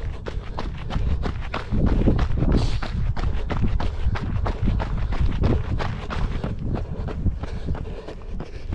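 A runner's footfalls in a quick, steady rhythm on a gravel path, picked up by a camera carried in the runner's hand, over a low steady rumble.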